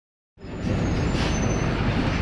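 Steady interior noise of a moving city bus, engine and road rumble, coming in about a third of a second in.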